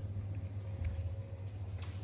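Steady low hum from an immersion-cooled Antminer bitcoin-mining rig running in its tank of cooling liquid, with a faint higher steady tone above it. There is a short click near the end.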